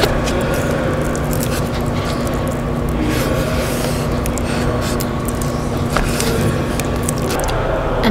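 Hands squishing and stirring cornstarch-and-water oobleck in a plastic tub: wet scraping and small squelches, over a steady low hum that stops shortly before the end.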